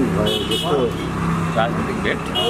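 People talking under a steady low hum of street traffic, the hum dropping away near the end.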